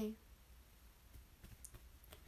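A quiet room with a few faint, sharp clicks, mostly in the second half, after a woman's voice trails off.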